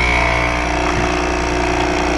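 Single-serve capsule coffee machine's pump buzzing steadily while it brews coffee into a mug.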